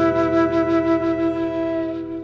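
Intro music led by a flute holding one long wavering note over a sustained chord.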